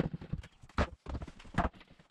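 Work boots stepping and a steel pry bar knocking on old pine plank subfloor: an irregular run of hollow wooden knocks with a short pause about a second in.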